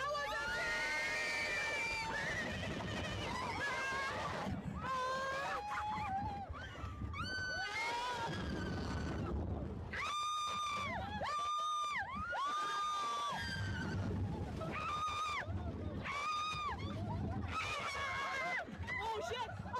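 Roller coaster riders screaming: a string of long, high-pitched screams from several voices, one after another and sometimes overlapping, over a steady rush of wind noise on the microphone.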